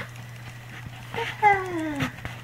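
Baby vocalizing: a short sound a little past halfway, then one falling-pitched call near the end.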